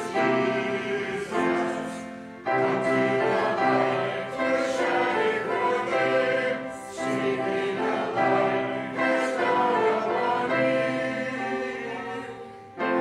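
A church congregation singing a hymn together, in slow, held phrases with brief breaks between lines and instruments playing along.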